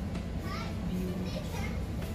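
Children's voices talking in the background over a steady low rumble.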